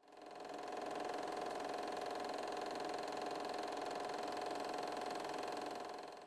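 A steady, even hum with a strong mid-pitched tone, fading in at the start and fading out near the end.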